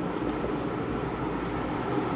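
Steady hum and hiss of a room air conditioner, with faint strokes of a marker on a whiteboard.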